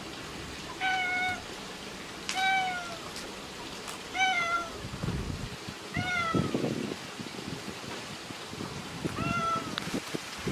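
Orange-and-white stray cat meowing five times, each meow short and slightly falling at the end, a second or two apart. A low rustle comes in the middle, between the fourth and fifth meows.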